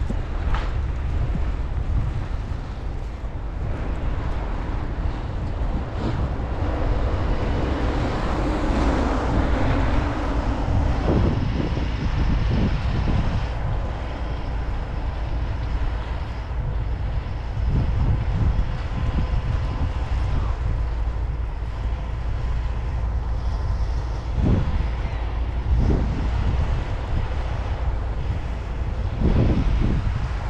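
Wind buffeting the microphone with a heavy, steady low rumble, over traffic driving on a snow-covered road. One vehicle swells up and fades away about eight to eleven seconds in.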